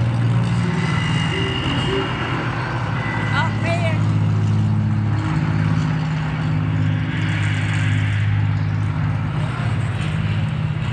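Low, steady droning of a propeller bomber's engines, part of the overhead light show's soundtrack, played over loudspeakers in the covered street.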